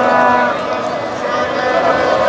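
A street crowd of celebrating football fans shouting and cheering, with a steady horn note that stops about half a second in.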